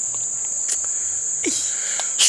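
Crickets chirring in a steady, unbroken high-pitched chorus.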